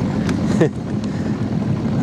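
Small boat motor running steadily.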